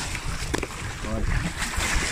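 Wind on the microphone over the low rumble of a boat at sea, with a sharp knock about half a second in and a brief voice a little later.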